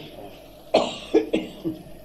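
A person coughing several times in quick succession, the first cough the loudest, starting about a third of the way in.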